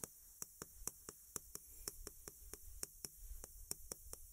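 Chalk tapping and scraping on a chalkboard during handwriting: a quick run of faint clicks, about five a second.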